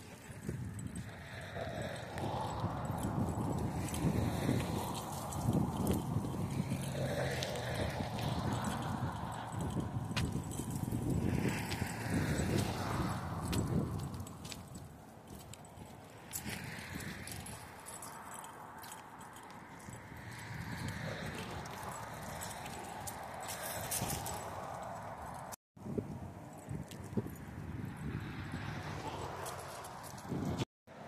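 Footsteps of a person walking on a paved path, mixed with rustling and handling noise from a hand-held phone. The sound cuts out briefly near the end.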